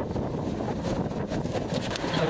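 Wind buffeting the phone's microphone in a steady low rumble, with a few faint knocks.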